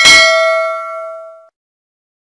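Notification-bell sound effect: a single struck ding that rings with a clear tone and fades out over about a second and a half, the chime that marks clicking the bell icon.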